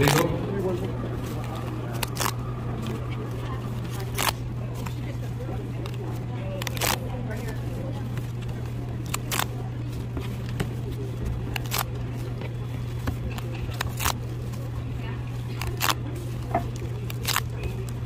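Paper pull-tab tickets being torn open and handled by hand: a dozen or so short, sharp paper snaps at irregular intervals, with rustling in between, over a steady low hum.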